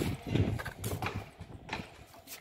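Irregular clattering knocks and taps, a few a second, with dull thumps underneath.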